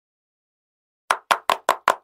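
A quick run of sharp knocks, about five a second, starting about a second in: a knocking sound effect.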